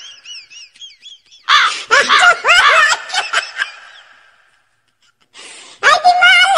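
High-pitched laughter: faint at first, then a loud run of laughs about a second and a half in that fades away over the next two seconds. After about a second of silence, a short noisy burst comes near the end.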